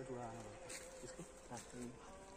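A faint, steady insect buzz, with faint speech in the background.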